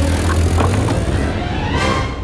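Car engine revving and accelerating hard, with a low steady engine note and a rising pitch near the end as the car speeds up.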